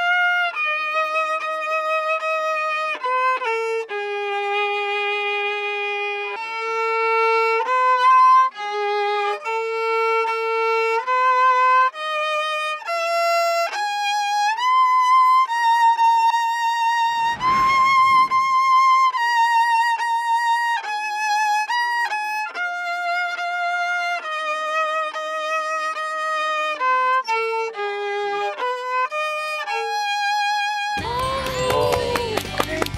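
Solo violin playing a slow melody one note at a time, with vibrato on the held notes. A short burst of noise cuts across it a little past the middle.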